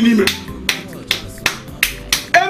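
A man clapping his hands in an even rhythm: about five sharp claps, a little over two a second, after a few words of his voice at the start.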